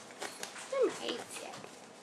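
Sphynx cat giving one short meow that falls in pitch, about a second in.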